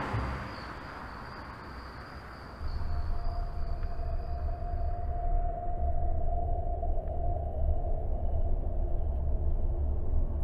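A car driving past, its noise fading away over the first couple of seconds. About two and a half seconds in, a low steady rumble begins, with a faint held tone over it.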